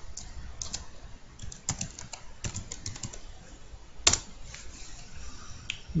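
Computer keyboard typing: irregular key clicks, thickest a second or two in, with one louder click about four seconds in.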